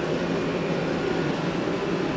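Steady fan-like blowing of a heater running, an even whoosh with no rise or fall.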